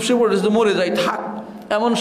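A man speaking in Bengali in a lecture, with a short dip in his voice shortly before the end.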